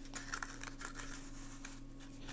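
Faint scattered taps and rubbing of hands handling a foam model flying-wing airframe, over a low steady hum.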